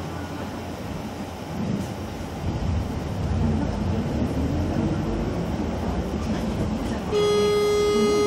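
Low engine and road rumble heard from inside a moving vehicle, with faint voices in the background. A little before the end, a loud, steady pitched tone starts and holds.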